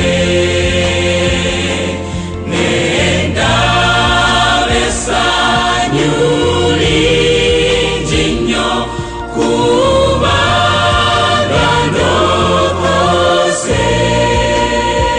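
A school choir singing a gospel song in several-part harmony, over long held low notes.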